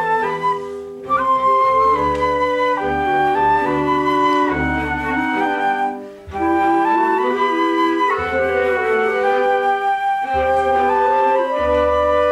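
A small orchestra with strings playing a classical passage under a conductor: sustained chords moving from note to note, with brief breaks between phrases about one and six seconds in.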